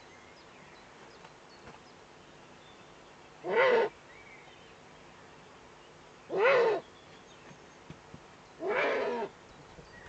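Eurasian eagle-owl calling three times, each call about half a second long and arching up and down in pitch; the last call is a little longer.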